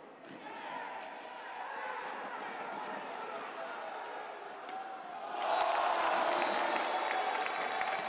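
Arena crowd noise at a roller hockey match, swelling into loud cheering about five and a half seconds in as a goal is scored.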